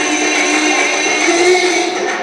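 Loud recorded dance music playing through a hall's speakers: a held, buzzing passage of steady tones whose low note steps up about halfway through.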